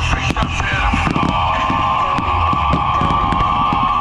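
Loud music with the many sharp pops of a fireworks display as ground fountains and aerial shells go off.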